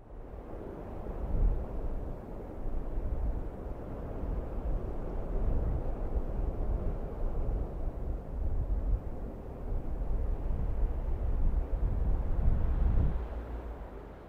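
Heavy rain pouring down steadily, with a deep, gusting rumble underneath.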